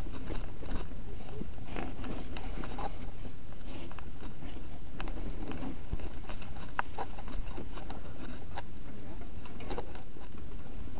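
Norco Sight full-suspension mountain bike riding down a rough dirt singletrack: a steady wind and tyre rumble on the microphone, broken by many irregular clicks and rattles as the bike jolts over ruts and roots.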